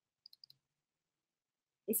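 Four faint, quick computer-mouse clicks in close succession, a quarter to half a second in, with near silence around them.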